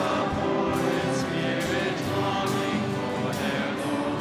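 Choir and congregation singing the closing hymn of the Mass, with steady instrumental accompaniment.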